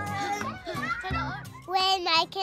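Background music with a steady bass line under children's voices and chatter, with a louder child's voice near the end.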